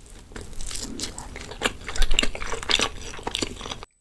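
Close-miked chewing of a piece of raw salmon nigiri: soft mouth sounds with many small irregular clicks and smacks. It cuts off abruptly just before the end.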